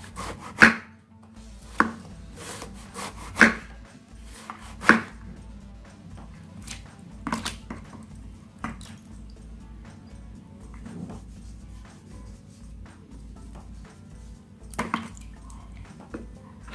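Kitchen knife slicing through a raw banana blossom and knocking on a wooden cutting board in sharp, irregular chops, several in the first few seconds, fewer in the middle and a couple more near the end.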